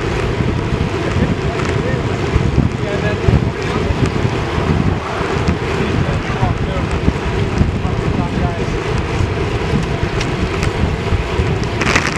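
Wind rushing over the microphone of a camera mounted on a road bike riding at about 35 km/h, a steady rumbling buffet with no let-up.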